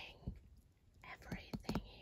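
Faint handling noises: soft rustling and a few light taps as a cloth dust bag and a paper gift bag are moved about.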